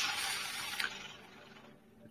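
Faint hiss fading away to silence in a pause between speech.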